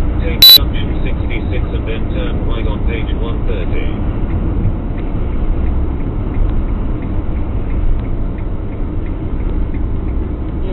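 Steady low rumble of road and engine noise inside a motorhome cab cruising at about 90 km/h. A sudden, very loud short beep cuts in about half a second in.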